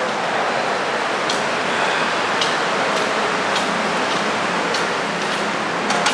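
A steady rushing hiss, with faint light taps about once a second like footsteps on a hard floor.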